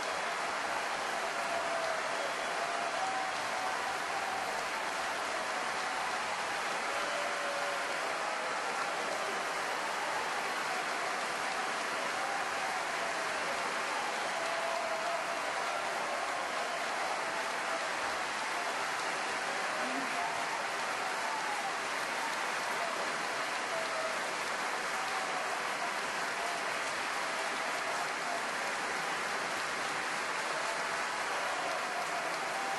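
Opera-house audience applauding steadily throughout, with scattered cheering voices in the clapping: an ovation at the end of the aria.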